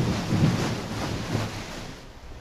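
A steady rushing noise that fades away near the end.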